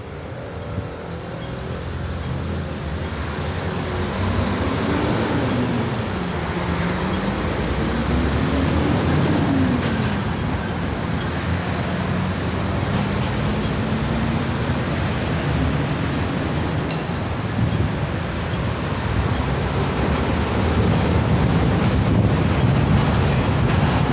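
Road traffic noise that swells over the first several seconds and then stays steady, with a vehicle engine's pitch rising and falling twice before holding level.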